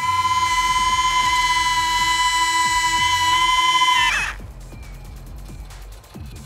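A loud, steady, high-pitched electronic bleep tone held for about four seconds before cutting off, over background music with a beat.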